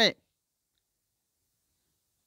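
The last syllable of a man's speech cuts off just after the start, followed by near silence.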